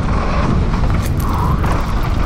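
Loud wind buffeting on a camera microphone, mixed with rumble and rattle from riding fast down a rough, rocky dirt trail.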